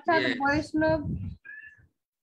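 A person's voice speaking a few short phrases over a video call, followed by a brief faint high tone about one and a half seconds in.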